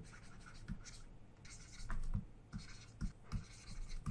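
Faint scratching of a stylus on a pen tablet as words are handwritten, with a few soft taps of the pen.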